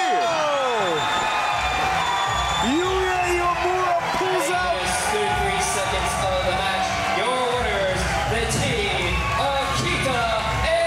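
Wrestling crowd shouting and cheering at the winning pin, a long falling yell at the start, then victory music with a steady bass coming in about a second and a half in.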